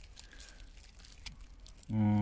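Faint rustles of leaves and grass brushing near the camera over low background. Near the end, a man's voice starts a long, level hesitation hum ("ähm").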